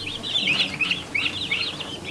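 Baby chicks peeping: many short, high, downward-sliding peeps from several chicks at once, a few every second and overlapping.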